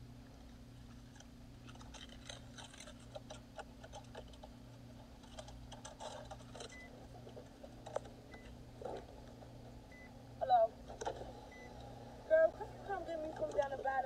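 Rustling and clicking from a phone being handled inside a car, over a steady low hum. A few faint short beeps follow about every second and a half. A voice comes in near the end.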